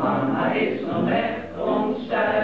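A small amateur group of men and women singing a song together from song sheets.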